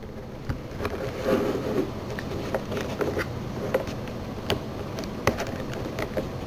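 Scattered small plastic clicks and handling noise from fitting a syringe into a Graseby MS16A syringe driver and fastening it in place.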